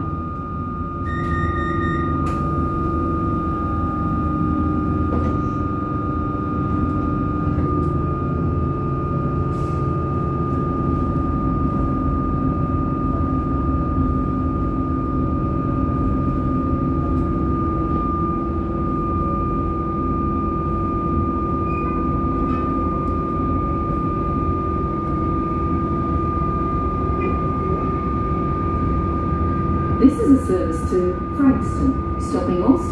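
Cabin noise inside a suburban electric train as it pulls out of a station and runs on: a steady low rumble with a constant high whine. A short beeping tone sounds about a second in.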